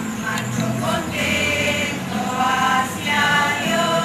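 A small group of women singing a hymn together in long held notes, with an acoustic guitar strummed along.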